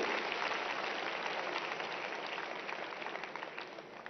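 Large seated audience applauding, the clapping trailing off and dying away near the end.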